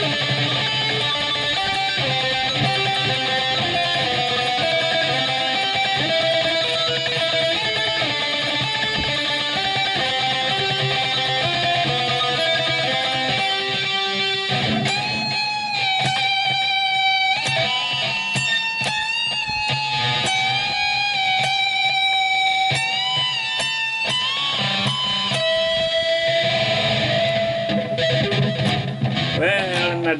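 Cort X-6 VPR electric guitar played through a loud distorted amp: quick runs of notes, then from about halfway long sustained lead notes with bends and vibrato, ending in a falling pitch dive.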